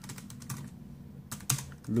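Keys being typed on the Asus Eee PC 1005PX netbook's keyboard: a handful of separate light clicks, the loudest about a second and a half in, over a faint steady low hum.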